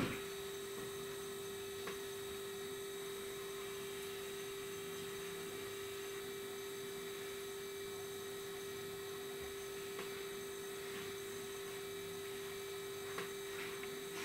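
A steady hum at one constant pitch over a faint hiss, with a short tick right at the start and a few softer ticks later.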